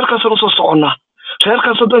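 Speech only: a person talking, pausing briefly about a second in.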